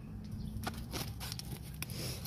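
A few faint clicks and taps of plastic milk jugs being handled and moved.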